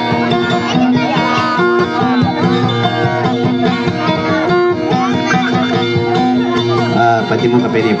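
Guitar playing dayunday music: a quick, even run of plucked notes over held bass tones.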